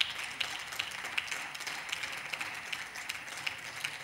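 A small group of seated deputies applauding, with many hand claps blending into a steady, even sound.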